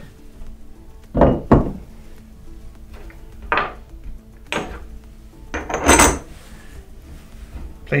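Steel cutter-block parts clinking and knocking as they are handled and set down on a wooden bench: five or so separate knocks, the loudest about six seconds in.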